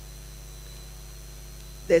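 Steady electrical mains hum with its evenly spaced overtones and a few faint high steady tones, carried in the microphone and broadcast feed during a pause in speech. A woman's voice cuts back in near the end.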